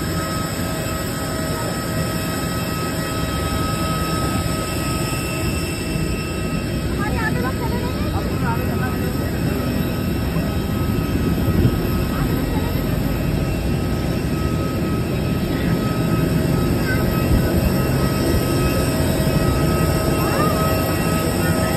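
Steady jet-aircraft noise on an airport apron: a continuous whine held on a few steady pitches over a low rumble, growing slightly louder toward the end.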